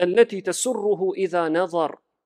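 Speech only: a man's voice talking continuously, with no other sound.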